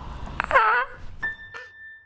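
A young child's brief high-pitched squeal, then soft piano background music starts about a second in with a high note held.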